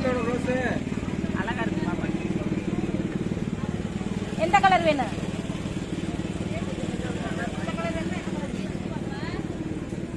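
Busy market street: scattered voices of people over a steady low engine hum, with one louder voice calling out about halfway through.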